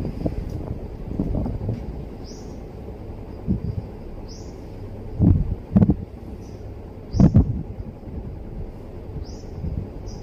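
A bird chirping: short, high, arched calls every second or two. A few dull thumps come about five and seven seconds in, over a steady low background noise.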